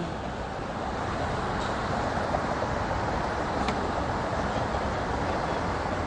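Steady traffic noise of vehicles passing on an interstate highway.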